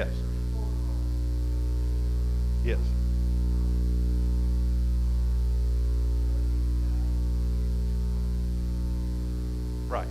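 Steady electrical mains hum on the sound system, a low, even drone with a buzzy edge that swells gently and eases off again. A man briefly says "yes" a couple of times.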